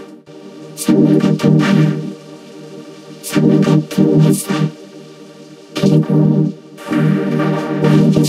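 The commercial's soundtrack turned into a buzzy, organ-like synth chord by a 'Supersaw' audio effect: one fixed chord that swells and drops in phrases about a second long with short gaps, following the rhythm of the underlying narration.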